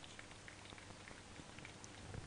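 Near silence: faint background with a steady low hum and a few soft ticks.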